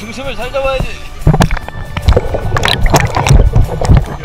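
Seawater splashing and sloshing over an action camera held at the surface in shallow surf. From about a second in come loud, irregular splashes and buffeting on the microphone as a wave washes over the lens.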